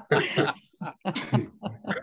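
A person's voice in a string of short, breathy bursts, the loudest right at the start and smaller ones following over the next second and a half.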